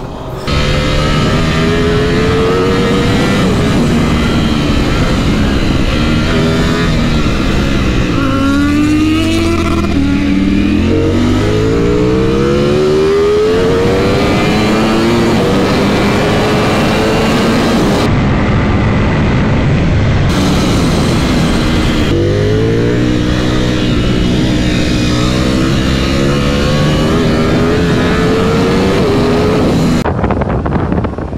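Ducati V4 superbike engine at high road speed, revs repeatedly falling and climbing as the rider rolls off, shifts and accelerates hard again. The pitch drops deeply and climbs back twice, about a third of the way in and again past two-thirds.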